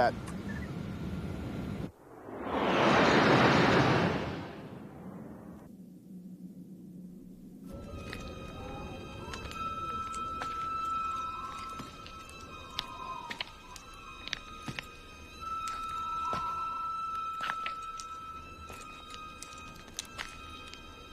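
A spacecraft fly-by sound effect: a loud whoosh that swells and fades over about two seconds near the start. After a short lull, from about eight seconds in, eerie sustained music plays, with a held high tone and scattered sharp ticks.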